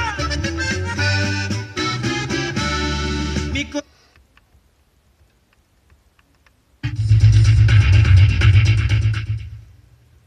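An FM radio receiving music with accordion on 106.1 cuts to near silence about four seconds in as the tuner steps to the next frequency. About three seconds later a new station on 107.1 comes in with music carrying a heavy bass line, which fades out near the end.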